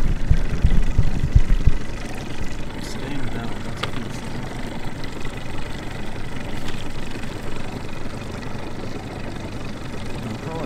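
Outboard motor running at idle, a steady hum at the boat's stern. Heavy wind buffets the microphone for about the first two seconds, after which the sound settles and is steadier.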